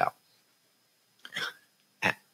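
A single short breath from the man at the microphone, a little past halfway through a silent pause in his talk.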